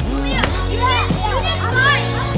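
Children shouting and squealing excitedly over background music, with one sharp knock about half a second in as a stick hits a piñata.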